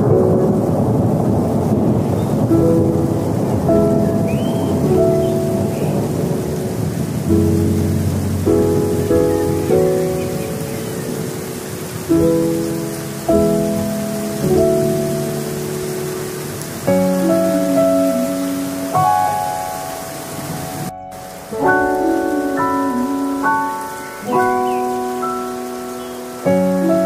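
Soft piano background music laid over a rain-and-thunder ambience. The rain and rumble are heaviest in the first several seconds, and the struck, fading piano notes stand out more clearly later on.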